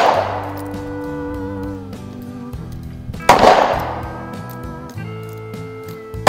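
Two gunshots from another shooter on the range, one right at the start and one about three seconds later, each ringing out and fading over about a second. Background music with sustained chords plays throughout.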